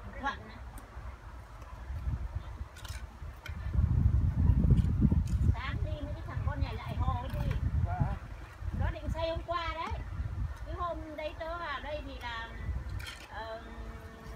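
People talking indistinctly through the second half, over a low rumble that is loudest in the first half, with a few sharp clicks.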